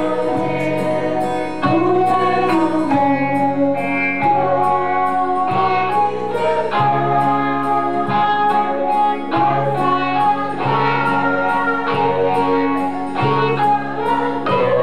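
A woman singing a hymn into a microphone, with instrumental accompaniment keeping a steady beat.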